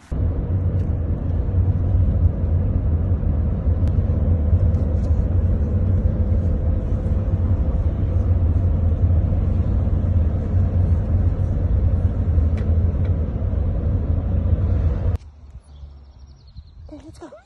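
Steady low rumble of a car on the move, heard from inside the cabin; it cuts off suddenly about a second before the end.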